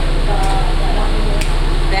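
Voices talking indistinctly over a steady low hum, with two sharp taps, about half a second and a second and a half in.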